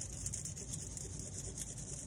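Felt tip of a permanent marker scrubbing back and forth on crumpled aluminium foil: a faint, scratchy rubbing, over a steady background hiss.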